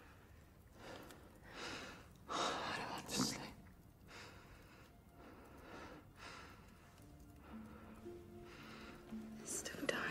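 Quiet whispered speech and breathy sounds, with soft, steady held music notes coming in over the second half.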